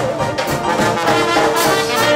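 Traditional New Orleans-style jazz band playing live, with trombone, cornet and saxophone playing together over string bass, drums and piano at a steady beat.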